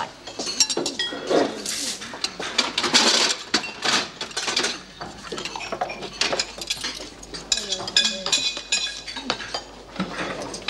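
Dishes, bowls and cutlery clinking and knocking together as meals are handled at a servery counter, a quick run of short sharp clinks with background voices.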